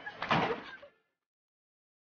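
A brief noisy sound lasting about half a second, then the soundtrack cuts to complete silence.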